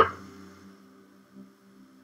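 A pause in speech: a faint, steady low electrical hum, with the tail of a spoken word at the very start.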